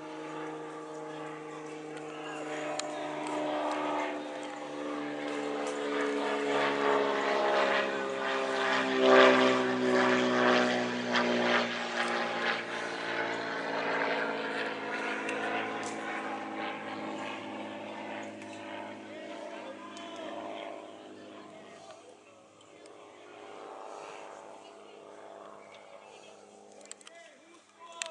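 A propeller aircraft flying over: a droning engine note with several tones that swells to its loudest about nine seconds in, drops in pitch as it passes, then fades away.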